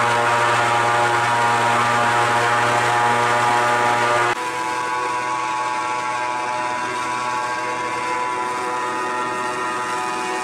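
Airboat engine and its large caged air propeller running steadily at speed, a loud, even drone with a deep hum under it. About four seconds in the sound drops abruptly to a somewhat lower, still steady level.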